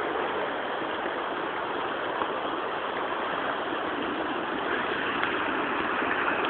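Rocky river rapids rushing steadily, the river running high.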